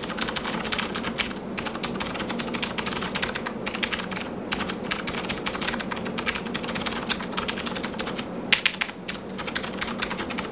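Fast touch-typing on a Das Keyboard Model S Professional mechanical keyboard: a dense, rapid stream of key clicks, at a pace of about 95 words per minute. About eight and a half seconds in there is one louder keystroke and then a brief lull before the typing resumes.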